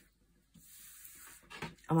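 A pause in speech: near silence, then a faint soft rustle, with a woman's voice starting again near the end.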